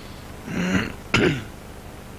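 A person at the meeting table clearing their throat: two short sounds, the first about half a second in, the second sharper and more cough-like just after a second in.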